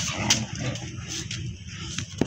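Huskies and a Labrador at rough play: brief dog noises among a few sharp clicks and scuffles.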